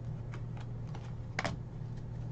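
Trading cards being flipped and slid against one another in the hand, a few light clicks with one sharper snap of a card edge about one and a half seconds in, over a steady low hum.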